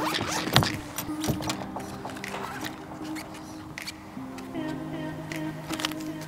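Zipper on a small hard-shell case being pulled open, with clicks and rattles of the case and its contents being handled, over background music with held notes.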